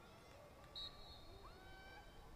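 Near silence with faint distant voices, broken just under a second in by a short, faint, high referee's whistle that starts a free-position shot in women's lacrosse.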